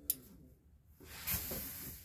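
Faint, steady hiss of water coming through a motorhome kitchen sink's mixer tap, starting about a second in, after the tap has been opened and the on-board water pump set running.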